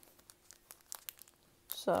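Foil wrapper of a Pokémon card booster pack crinkling as it is handled: a few faint, scattered crackles.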